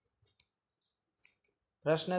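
Near silence with one short, faint click about half a second in and a few fainter ticks a little past a second; a man's voice starts speaking just before the end.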